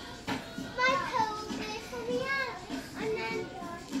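Children's high-pitched voices talking and calling out, loudest about a second in.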